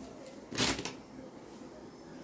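A single brief rustle, about half a second in, from a garment or its cloth being handled.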